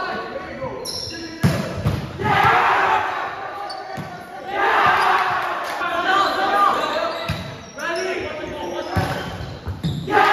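A volleyball being hit during a rally, several sharp smacks over the ten seconds, the loudest about one and a half seconds in, with players calling out. Everything echoes in a large gym hall.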